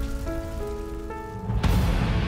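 Dramatic film-score music of held notes over the crackle and low rumble of a house fire. The fire noise swells loudly near the end.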